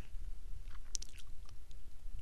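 A short run of faint, soft clicks in the middle, over a low steady room rumble.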